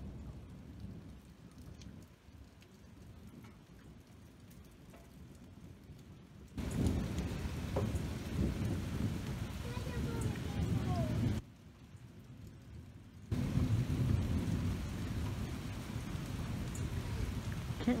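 Leaves and twigs of a shrub rustling and brushing against the phone's microphone as the branches are held apart, a rough rumbling noise that turns much louder about six seconds in, drops away briefly near the eleven-second mark, then returns.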